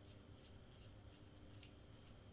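Near silence with a few faint paper rustles and ticks as a rolled cardstock flower is twisted tighter between the fingers.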